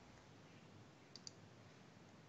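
Near silence, broken about a second in by two quick, faint clicks of a computer mouse, close together like a double-click.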